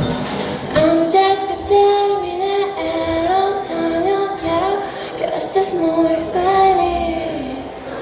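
Live acoustic pop-rock: a woman singing a melody with long held notes over a strummed acoustic guitar and a drum kit. The singing comes in about a second in and fades near the end.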